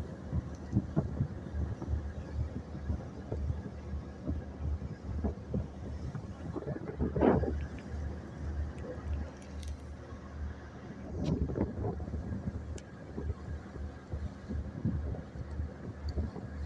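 Small boat underway at sea: a low, uneven rumble of wind buffeting the microphone over the running boat, with water splashing and rushing along the hull and louder surges about seven and eleven seconds in.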